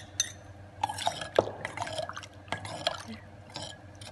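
Liquid poured from a small porcelain bowl into a large bowl of sauce, splashing and dripping in several short spells, with a few sharp clinks near the start.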